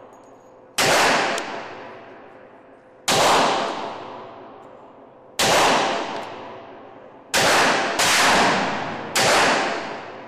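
A .45 ACP 1911 pistol fired six times at an uneven pace, one to two seconds apart with the last few closer together. Each shot is loud and echoes for a second or more.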